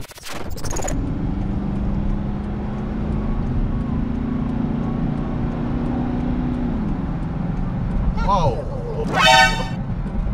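Steady engine and road noise from a moving car, its low drone dropping in pitch at about seven seconds, then a short exclamation and a car horn sounding once for about half a second just after nine seconds.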